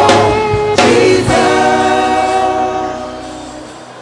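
Gospel worship music: held chords with voices, a last chord struck about a second in and then fading away near the end.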